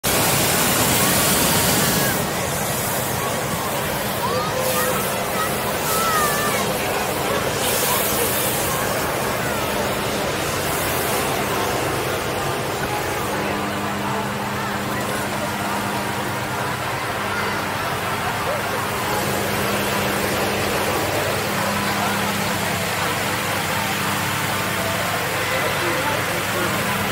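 Crowd chatter from many people talking at once on an open field, over a steady rushing noise that is loudest in the first couple of seconds. A low steady hum joins about halfway through.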